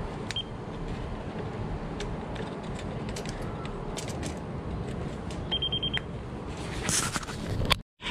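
Pen-style non-contact voltage tester beeping with a high tone: a very short beep near the start and a half-second beep about five and a half seconds in, the signal that it senses voltage where it is held. Steady background noise and a few handling clicks run underneath.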